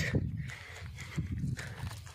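Footsteps in loose sand while walking, a few soft, irregular steps.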